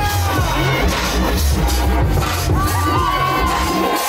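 Loud dance music with a heavy bass beat, mixed with a crowd cheering and shouting around the dancer; the bass cuts out just before the end.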